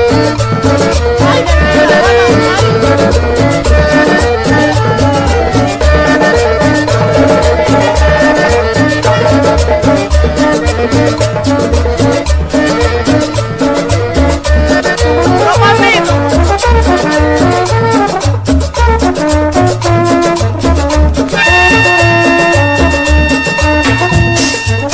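Instrumental cumbia music with a steady beat of bass and percussion and no singing; near the end a few held high tones come in over the beat.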